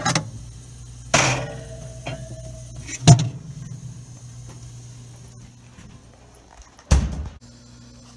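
Glass bottles shifted and knocked inside a mini fridge: a scrape with a short ringing clink about a second in, a sharp knock about three seconds in, and a heavy bump near seven seconds. A steady low hum, from the fridge's compressor running, sits under them throughout.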